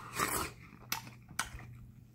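A mouthful of juicy watermelon bitten off a fork: one short wet slurping bite near the start, followed by a couple of sharp chewing clicks.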